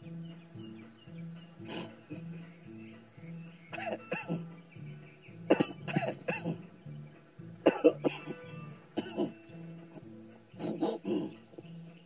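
A man coughing and hacking in several short fits over quiet background guitar music.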